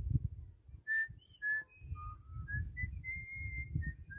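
A series of clear whistled notes, each at a single pitch, stepping up and down like a short tune, with the last and longest held for most of a second near the end. Under them runs a low, uneven rumble.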